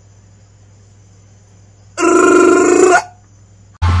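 A single loud, steady horn-like tone with a rich set of overtones sounds for about a second, between quiet stretches with a faint low hum. Loud music starts just before the end.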